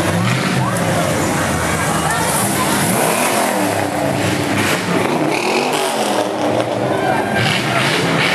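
Engines of classic cars running as the cars cruise slowly past one after another, their pitch dipping and rising as each goes by, with people talking along the street.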